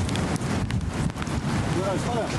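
Steady rushing wind noise on the microphone, with a brief voice near the end.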